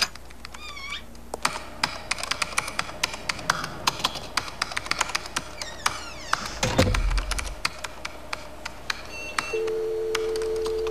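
Rapid typing on a computer keyboard. Electronic sounds from the computer come with it: a short warbling chirp just under a second in, a falling run of tones about two thirds of the way through, then brief high beeps and a steady two-note tone near the end.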